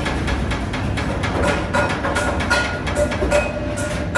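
Steady metal clatter in an iron-wire cage workshop: rapid clicks and clinks, with a few brief ringing tones.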